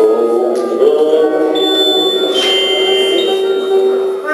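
Live band playing held, droning notes. A thin high tone comes in about a second and a half in and changes pitch twice.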